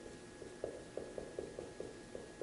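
Dry-erase marker being written on a whiteboard: a string of faint short ticks and taps, several a second, as letters are formed.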